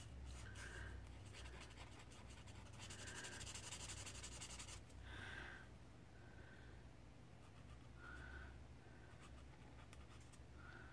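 Faint squeaking and rubbing of an alcohol marker's felt tip on coloring-book paper, in short strokes, with a longer scratchy stroke about three seconds in.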